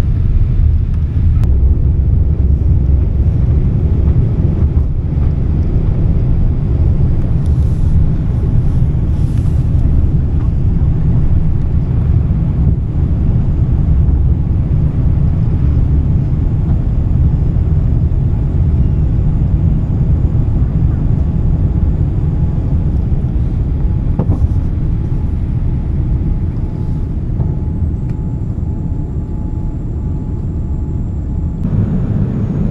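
Boeing 787 Dreamliner's jet engines at takeoff thrust, heard from inside the cabin: a loud, steady low rumble through the takeoff roll and climb-out, easing slightly near the end.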